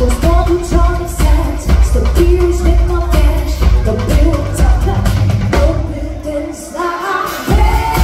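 Live amplified pop song: a woman singing lead over a heavy, bass-driven beat. The bass drops out for about a second near the end, then comes back in.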